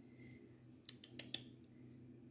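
Near silence: room tone, with three or four faint clicks around the middle.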